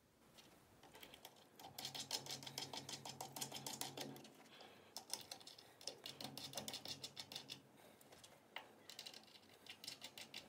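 Stainless steel nuts being run by hand onto M6 stainless threaded screws: quick, light metallic clicking and rattling in three spells.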